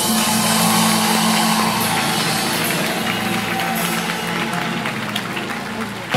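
Live band of saxophones, double bass, electric guitar and drums playing an instrumental passage, with long held notes.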